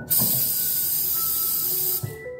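Bathroom tap running into the sink: a steady, loud hiss that starts suddenly and cuts off suddenly.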